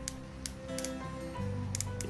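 Background music, over which a few short, sharp clicks come from a Ryu RCD 12V cordless drill being handled, its torque-adjustment collar clicking as it is turned.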